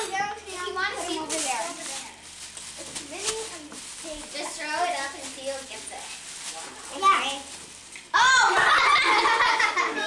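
A group of young girls chattering and exclaiming over one another, with a sudden, much louder burst of high, excited voices about eight seconds in.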